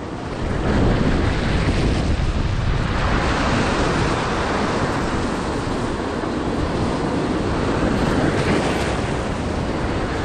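Ocean swell surging and breaking against a rock ledge, white water washing and foaming over the rocks in a steady rushing wash.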